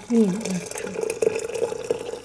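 Water pouring in a thin stream into a ceramic teapot: a steady trickle with a held ringing tone from the filling pot. A short voiced sound comes at the very start.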